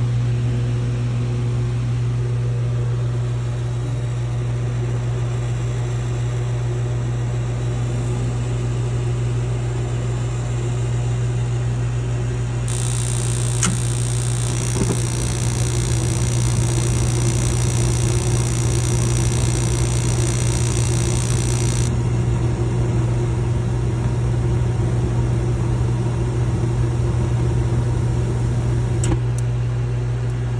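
Mr. Heater Big Maxx MHU50 gas unit heater: its combustion air blower hums steadily. About 13 seconds in, the burners light with a click and burn with a rushing hiss for about nine seconds, then cut out suddenly while the blower keeps running. The flame dropping out after only seconds is the short-cycling that the owner questions as abnormal.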